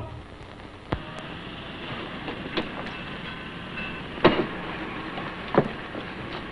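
Steady hiss of an old film soundtrack with a few sharp pops and clicks, about one, two and a half, four and five and a half seconds in.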